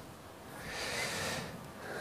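A person drawing one soft breath, a faint airy hiss lasting about a second.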